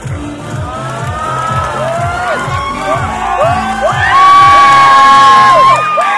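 Audience cheering and whooping, many high shouts rising and falling over music with a steady beat; the cheering swells about four seconds in, with one long held shout before it drops back just before the end.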